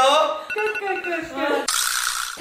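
Mostly voices: talk and laughter from the players, then a short burst of noise near the end.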